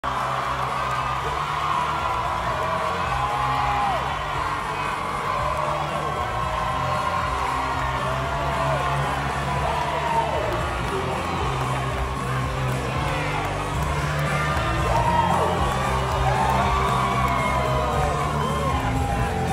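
Crowd cheering and shouting over music with a steady bass line.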